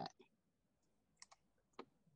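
Near silence broken by a few faint clicks of a computer mouse, two close together past the middle and one more near the end.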